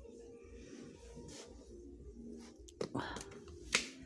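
Faint background voices, then a rustle about three seconds in and a sharp click just before the end as plastic-wrapped craft packages are handled on a pegboard display hook.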